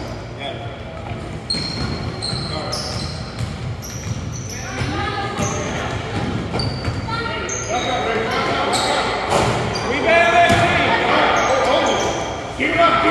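Basketball bouncing on a hardwood gym floor and sneakers squeaking, in an echoing gym, with children's voices that grow louder in the last few seconds.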